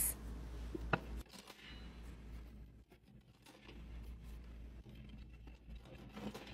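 Faint handling sounds: small plastic clicks and scrapes as miniature bottles are slotted into a plastic toy vending machine, with one sharper click about a second in.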